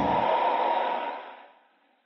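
An airy, whooshing sound effect in an animated title sequence, fading out about a second and a half in.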